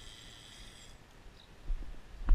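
A steady, high electronic beep lasting about a second, from the FPV quadcopter's electronics, then soft footsteps near the end as the pilot walks toward the quad.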